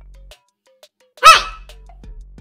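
A single short, loud shout of "Hey!" in a very high-pitched, sped-up voice, over quiet background music with a low bass note.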